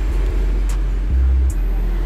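Steady low rumble, swelling briefly a little after a second in, with a few faint clicks from a smartphone's side volume buttons being pressed.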